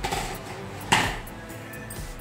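Background music, with a single sharp knock against the metal kadai about a second in as something is set into the pan.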